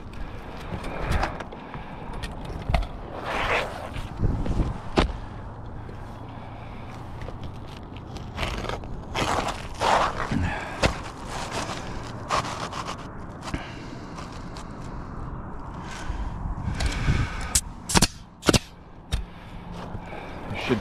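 Asphalt shingles being slid and pressed into place on a roof, with scraping, shuffling and light knocks. Near the end come two sharp shots from a pneumatic coil roofing nailer driving nails.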